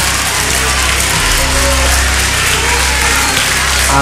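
Studio audience applauding over steady background music.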